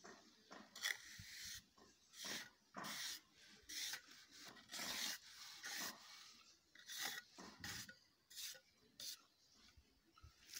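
A steel mason's trowel scraping and smoothing wet cement render in a dozen or so short strokes, about one a second.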